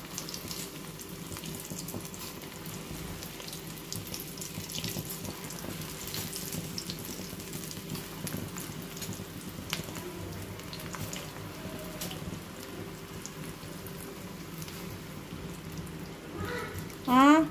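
Battered spinach leaves deep-frying in hot oil in an open pan: a steady sizzle with many small pops and crackles.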